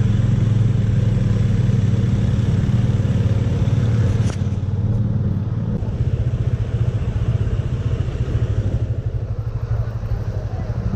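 Motorcycle engine running at low road speed, heard from the rider's seat. The note holds steady for the first half, then drops and turns rougher and more pulsing about six seconds in.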